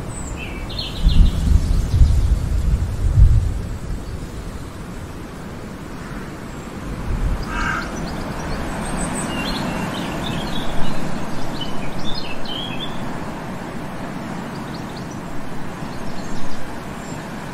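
Birds chirping a few times over a steady background hiss, once about a second in and again, more often, from about seven to thirteen seconds in. A low rumble swells between about one and four seconds in and is the loudest sound.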